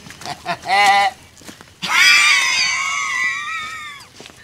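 A short shouted exclamation, then a long, high-pitched scream starting near the middle and held for about two seconds, sliding slightly down in pitch as it fades.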